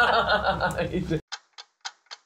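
Voices of a group talking and laughing stop abruptly about a second in, giving way to a clock-ticking sound effect: short, sharp ticks, about four a second.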